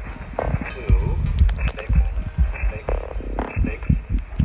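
Experimental electronic music from a live synth-and-laptop set: irregular low thumps under short, chopped, voice-like blips and chirps that bend in pitch.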